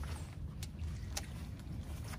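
Quiet low rumble with a few faint, short clicks about half a second apart: handling and movement noise on a small boat.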